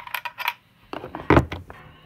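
A small electronic lens chip and its mounting plate clicking and clattering as they are handled. There is a quick run of light clicks, then a louder cluster of knocks and rattles about a second in, with a short faint ring after it.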